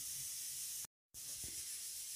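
Faint, steady background hiss with no distinct event. About a second in it drops out to dead silence for a moment, then returns.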